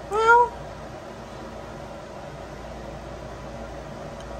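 A cat meows once, a short call with a slight upward bend, right at the start. Under it and for the rest of the time runs the steady hum of the pet-drying cage's fan.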